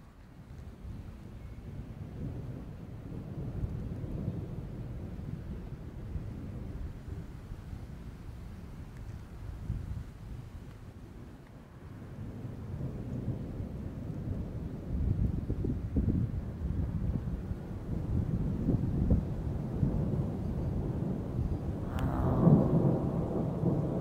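Thunder rumbling low and rolling, growing louder through the second half. A sharp crack near the end marks a lightning strike right overhead, followed by a loud rumble.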